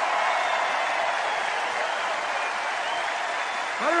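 A large crowd applauding, a dense steady clapping that eases off slowly; a man's voice starts speaking over it at the very end.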